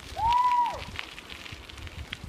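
A short high whistle-like tone that rises, holds and then falls, about half a second long, over a low hiss of bicycle tyres rolling on the road and wind.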